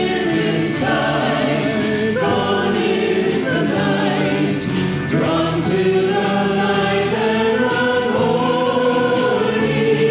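A small vocal ensemble leads a congregation in a hymn, singing together over steady instrumental accompaniment.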